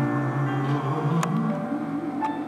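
Live grand piano playing the closing bars of a song, with held chords and a low line that steps up near the middle.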